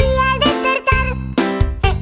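Upbeat children's song music with a steady beat, a bass line and bright, jingly melodic notes, with no clear singing.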